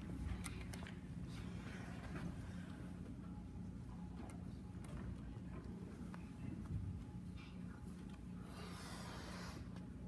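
Quiet hall ambience: a steady low hum with faint scattered rustles and clicks, and a short breathy hiss about a second before the end.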